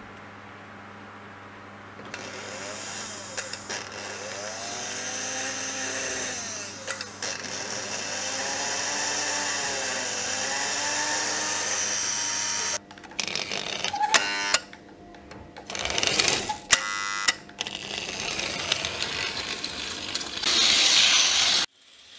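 Märklin 3021 (V200) H0 model locomotive's motor running on test leads, with a high whir that speeds up and slows down several times. About thirteen seconds in, the steady run gives way to irregular clicks and short bursts.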